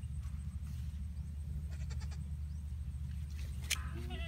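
A steady low rumble with a few faint clicks and one sharp click near the end, as a goat kid starts to bleat right at the close.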